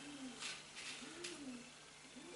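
Faint cooing of a pigeon: a few soft coos, each rising and falling in pitch.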